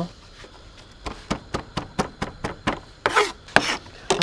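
Chef's knife chopping fresh rosemary on a plastic cutting board in quick, even strokes, about four a second. A short scraping sound follows near the end.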